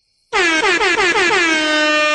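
A loud air horn blast. It starts with a stuttering pitch that dips sharply several times, then settles into one steady held tone.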